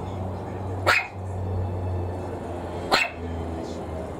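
Maltese puppy barking twice, two short, sharp barks about two seconds apart: wary barking at a plastic bottle it is afraid of.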